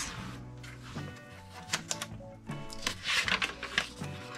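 Soft background music, with the rustle and flap of paper as a sketchbook page is turned by hand.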